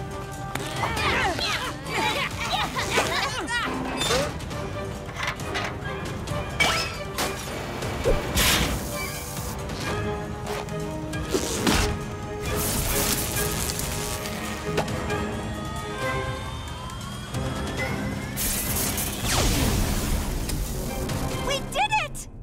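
Animated-cartoon action score with repeated crashes and bangs from a machine being smashed, and a rising sweep in the last third.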